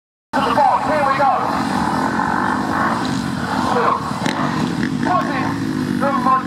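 Motocross bike engine running steadily at low revs, with a man's voice talking over it on and off.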